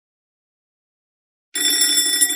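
Silence, then about one and a half seconds in a school bell starts ringing, with several steady ringing tones over a rattling buzz. It signals break time.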